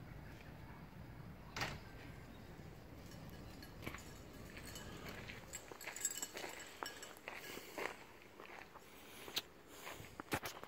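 Faint, irregular footsteps and scuffs of a person walking while filming, with a few sharper clicks of phone handling.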